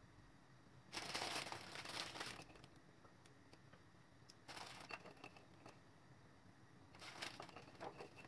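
Plastic wrapper of a packet of sponge-finger biscuits crinkling faintly in three short bouts, the first and longest about a second in, as the biscuits are handled and taken out.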